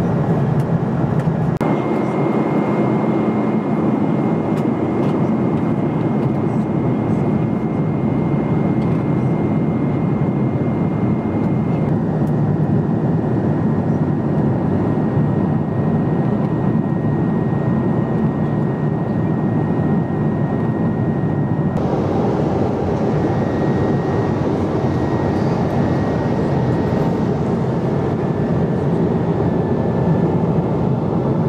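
Steady cabin noise of a Boeing 777-200 in cruise, heard inside the cabin: the dense rush of airflow and the drone of its jet engines, with a faint high whine whose pitch jumps abruptly a few times.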